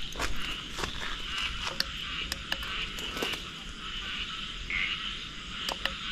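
Night chorus of frogs and insects, a steady, dense trilling, with scattered light clicks.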